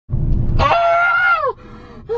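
A person's high-pitched scream inside a moving car. It is held for about a second and drops away at the end, over the low road rumble of the cabin.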